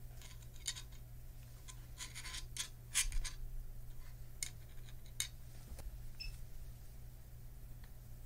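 Hands handling a small printed circuit board and pressing it down on a work mat: a scatter of light clicks, taps and scrapes over the first six seconds, the loudest about three seconds in, over a steady low hum.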